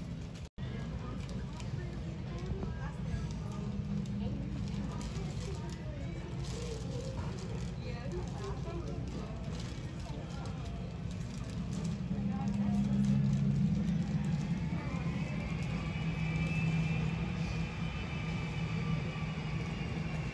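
Boeing 757-200's two Pratt & Whitney PW2037 turbofan engines running as the jet taxis in: a steady low rumble, with a high engine whine coming in about two-thirds of the way through.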